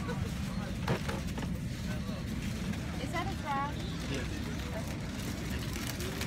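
Steady low hum of an airliner cabin on the ground, under indistinct chatter of many passengers talking.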